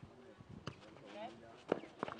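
Sharp hits of a nohejbal ball in play, kicked or bouncing on the clay court: a lighter hit about two-thirds of a second in and a louder one near the end, with players' brief calls in between.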